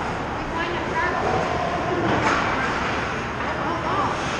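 Ice hockey rink ambience: a steady wash of skate blades and sticks on the ice, with faint distant shouting voices.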